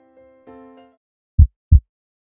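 Heartbeat sound effect: two deep thumps in quick succession, a lub-dub, near the end, after soft electric-piano notes fade out.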